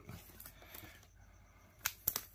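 Quiet room tone, with a single sharp click near the end.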